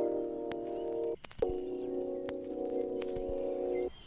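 Hip-hop intro music: sustained chords held for a couple of seconds each. One chord breaks off a little over a second in and the next follows at once, with a few faint sharp clicks over them.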